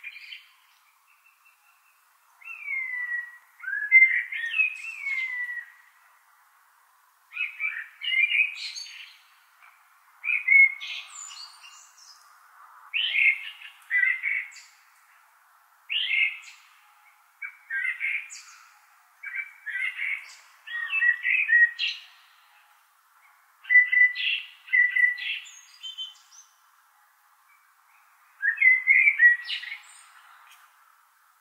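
A songbird singing: short, varied phrases of chirps and whistles, repeated about every two to three seconds with brief pauses between.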